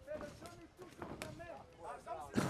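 Men's voices calling out over the fight, with two sharp smacks of strikes landing about a second in.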